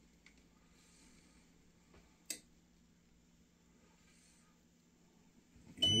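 Quiet room with a faint steady low hum and one sharp click about two seconds in while the heat press stays clamped. Near the end the heat press timer starts a high, steady beep, signalling that the 12-second press time is up.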